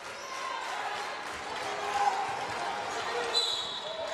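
Game sound from a college basketball arena: a steady crowd murmur with the ball being dribbled on the hardwood court. Near the end comes a short high whistle blast, a referee's whistle calling a foul on a drive to the basket.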